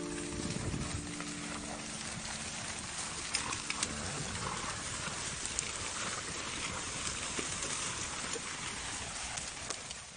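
A herd of horses running through grass: an even rustling haze with a few sharp hoof clicks. The harp's last low notes ring on and fade out in the first two seconds.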